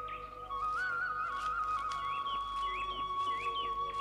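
Background score: a flute-like melody stepping between notes over a steady held drone, joined from about halfway by short chirping calls repeating about twice a second.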